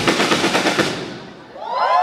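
A live band's drum kit plays the last hits of a song and dies away about a second in. Near the end the audience starts cheering, with high voices gliding up in pitch and holding.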